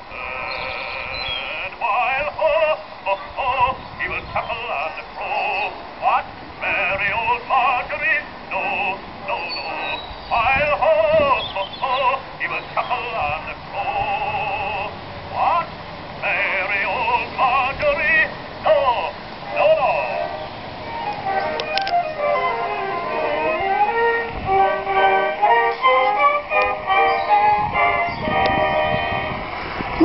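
Edison Diamond Disc phonograph playing a record of a man singing with accompaniment, heard from about 50 to 60 feet away in the open. In the last third the notes change to a busier run of short stepped notes.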